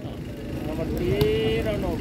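A person's voice calling out in one drawn-out tone about a second in, over low open-air background noise at a volleyball court.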